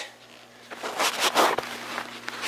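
Fabric of a down sleeping bag and its stuff sack rustling and crinkling as it is handled and hooked onto a hanging scale, starting about two-thirds of a second in.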